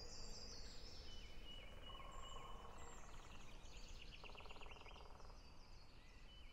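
Faint forest ambience: small birds chirping in short repeated high calls and trills over a low hiss, fading out near the end.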